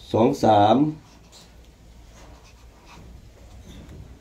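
A man speaks briefly at the start, then faint strokes of a felt-tip marker on paper are heard as numbers are written.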